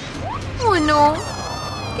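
A girl's drawn-out, whining "oh no", her voice falling in pitch and then held, over light background music.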